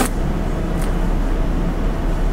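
Room tone: a steady low hum under an even hiss, with a short click at the very start.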